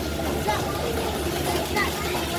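Milking parlour machinery running with a steady low hum, with voices talking over it.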